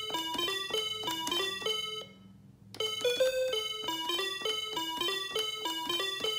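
AR-7778 musical calculator beeping out a quick repeating note figure (6-3-4-5-6) as its number keys are pressed: buzzy electronic tones, about five notes a second, with a short break about two seconds in.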